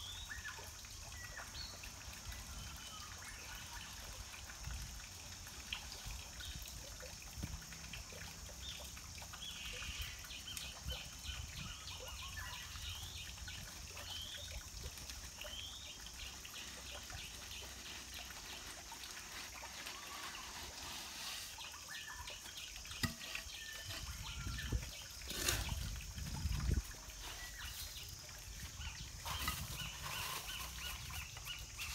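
Outdoor ambience with small birds chirping again and again over a low rumble, and a few dull thumps and knocks near the end.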